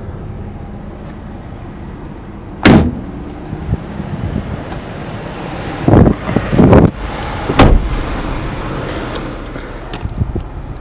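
Thumps and knocks from a Jeep Wrangler's doors and body being handled, over steady outdoor background noise. There is a sharp thump a few seconds in, then a cluster of heavier knocks past the middle, and another sharp thump soon after.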